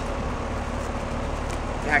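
Rheem three-ton central air conditioner condenser running: a steady rush of the condenser fan through the stamped top grille. The compressor, wrapped in a packed sound blanket, is not heard over it.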